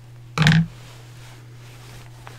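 A single short vocal sound from a woman, such as a brief throat noise or "mm", about half a second in, over a steady low hum.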